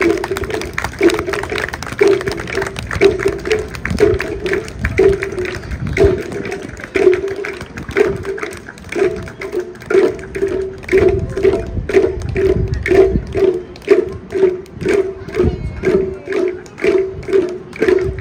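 Chinese waist drums beaten by a marching troupe in a steady rhythm of about two strokes a second, each stroke a pitched drum tone.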